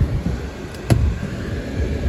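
Uneven low rumble of a handheld phone being moved around inside a car's cabin, with one sharp click about a second in.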